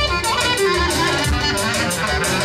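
Live party music from a keyboard band through PA speakers: a steady beat with a sliding, fiddle-like lead melody.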